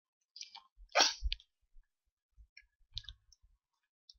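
A short cough about a second in, amid a few faint computer keyboard and mouse clicks.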